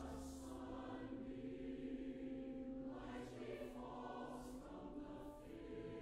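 Large mixed choir singing slow, held notes in a classical choral work, with its 's' sounds standing out several times.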